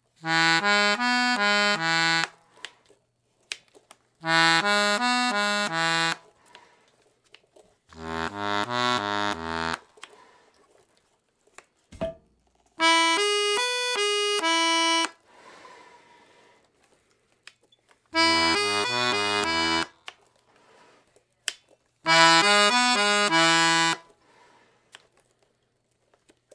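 Mark Savoy Acadian Cajun diatonic button accordion in A, with four-voice LMMH reeds, playing six short phrases of about two seconds each with pauses between them. The tone changes from phrase to phrase as different register settings are tried, and there are small clicks in the gaps.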